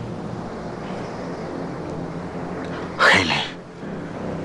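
A steady low drone, then about three seconds in a sudden loud, short vocal cry that falls in pitch.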